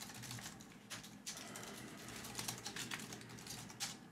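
Typing on a computer keyboard: a steady run of quick key clicks, with one harder keystroke near the end.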